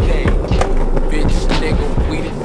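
Skateboard wheels rolling on concrete, under a loud hip-hop track with a heavy bass beat and rap vocals.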